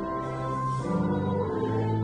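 Church hymn music: voices singing over sustained chords that change about a second in and again near the end.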